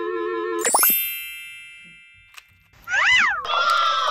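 A run of cartoon-style sound effects. A held, wavering tone ends with a swoosh and a ringing ding that fades over about two seconds. Near three seconds comes a quick up-and-down pitch glide, then a falling, voice-like cry.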